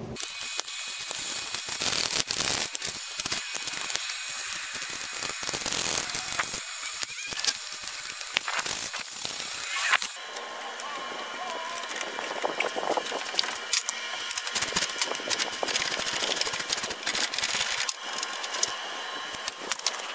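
Hand socket ratchet clicking in uneven runs as the bolts holding a truck's crossbar are backed out.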